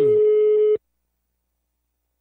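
A single steady telephone line tone, like one long busy-signal beep, cutting off abruptly after under a second, then dead silence.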